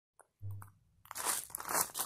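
A brief low hum, then dry crunching sounds in quick, irregular succession starting about a second in.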